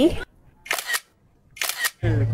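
Two smartphone camera shutter sounds about a second apart, each a short snap.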